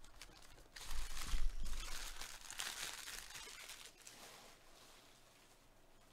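Foil wrapper of a 2022 Topps Heritage baseball card pack crinkling as it is handled and crumpled, starting about a second in, in a few crackling bursts that die away after about four seconds.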